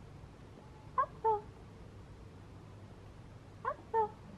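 Bearded collie puppy giving short high whimpering yelps, two in quick succession about a second in and two more near the end.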